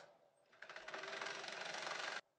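A short click, then about half a second in a reel-fed film machine starts up and runs with a fast, even mechanical clatter.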